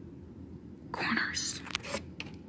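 A person whispering briefly, starting about a second in, over a low steady room hum.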